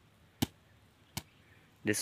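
Two sharp slaps of a hand striking a whole watermelon, about three-quarters of a second apart. A man starts speaking near the end.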